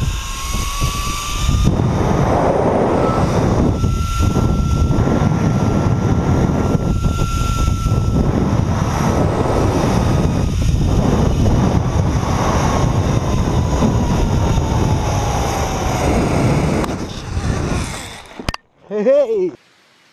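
Zip-line trolley pulleys running along a steel cable at speed, a single thin whine that rises a little, holds, then slowly sinks as the rider slows, over heavy wind rush on the helmet camera's microphone. It cuts off suddenly near the end, followed by a brief voice-like call.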